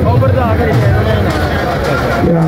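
Men's voices talking close by over the steady noise of a crowd.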